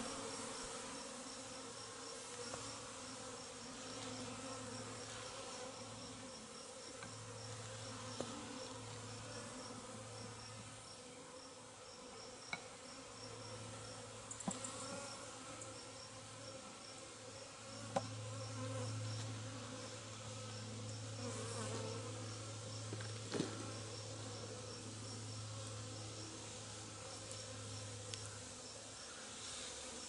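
Honeybees buzzing as they fly around an opened top-bar hive: a steady hum that swells and fades as bees pass near, loudest a little past halfway.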